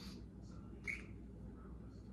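Faint handling of a small metal tactical flashlight as its body is twisted and pulled open, with light ticks and one sharper click about a second in.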